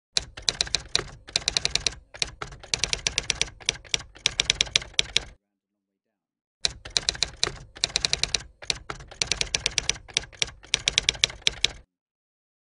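Typewriter keys typing in two rapid runs of about five seconds each, with a silent pause of about a second between them.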